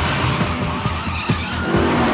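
Race car sound effect: an engine at full throttle and tyres skidding as the car accelerates past at speed.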